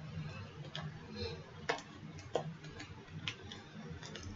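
About five sharp, irregularly spaced clicks with light handling noise as hands work the fastenings at the collar of a denim jacket, over a faint steady low hum.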